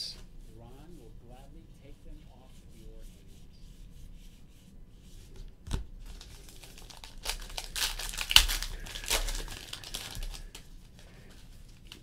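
A foil trading-card pack being torn open, its wrapper crinkling for about three seconds from about seven seconds in, after a single sharp click.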